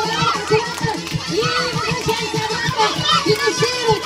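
A crowd of children shouting and cheering over one another, many voices at once.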